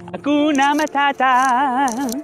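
A man's tenor voice singing a short phrase: a few quick syllables, then a held note with a clear vibrato that breaks off near the end.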